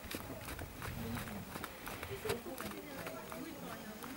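Hoofbeats of a horse trotting on a sand arena, heard as irregular soft thuds, under quiet voices talking.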